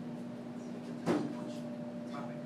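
A single short knock about a second in, with a brief ring that drops in pitch, over a steady low hum.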